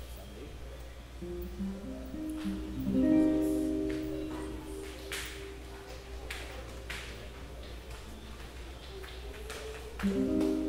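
Acoustic guitar being plucked, a short loose run of single notes that ring on, about one to four seconds in, followed by a few faint clicks and taps.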